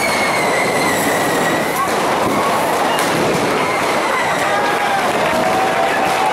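Dense, steady hiss and whoosh of many cordà firework rockets fizzing through a street, with a long high whistle that slowly falls in pitch over the first few seconds and a couple of sharp cracks. People shout over it in the second half.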